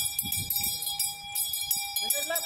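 A hand bell rung continuously with rapid, even strokes, its ringing tone held steady.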